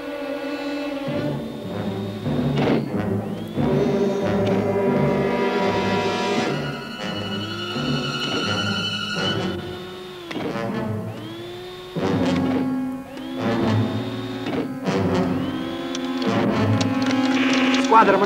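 Tense film score: orchestral music with timpani strikes and held electronic tones, some of which swoop up in pitch and then hold.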